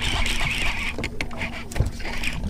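Water and wind noise around a bass boat on choppy water, with scattered small clicks and knocks from handling a fishing rod and reel over a faint steady low hum.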